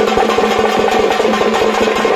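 Loud, fast drumming with rapid strokes over a steady held tone, typical of festival percussion.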